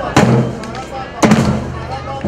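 Percussion band of surdo bass drums and snare drums striking loud hits together, twice about a second apart, each leaving a booming low ring.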